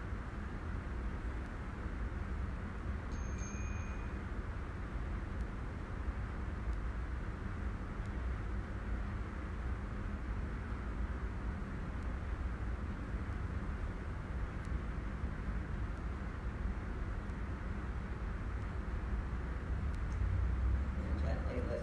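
Steady low rumble and hiss of room tone, with no distinct event standing out.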